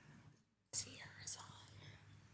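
Faint whispered speech, cutting out for a moment about half a second in and then returning.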